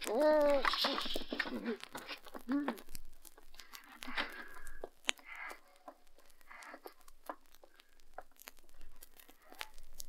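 Radio-drama Foley: a short vocal groan or cry, then faint rustling, scuffing and scattered clicks as a wounded man is moved behind a crate to hide.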